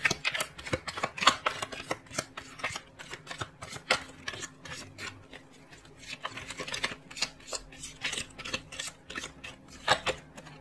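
A deck of tarot cards being shuffled by hand: a quick, irregular run of card clicks and slaps that thins out briefly about five seconds in, then picks up again.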